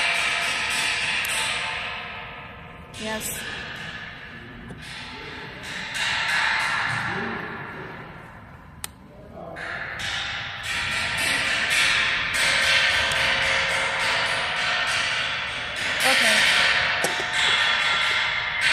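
A cotton-gloved hand working the off-circuit tap changer on a distribution transformer's lid: rustling and scraping of glove on metal that swells and fades in waves, with many small clicks and one sharp click a little before the middle.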